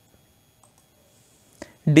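Near silence, with a faint short click about one and a half seconds in and a man's speaking voice starting at the very end.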